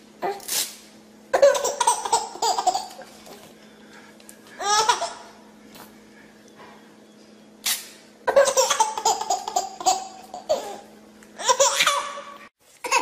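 A baby laughing in fits: a long bout of laughter about a second in, a shorter one near five seconds, and another long bout from about eight seconds. The laughs follow quick rips of a sheet of paper being torn by an adult's hands, one just after the start and another shortly before the second long bout.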